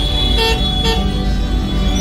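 Two short vehicle horn beeps, about half a second apart, in traffic, over background music.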